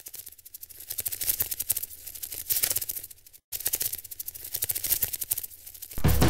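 Intro sound effect of rapid, dense clicking and crackling in two runs, broken by a brief silence about halfway through.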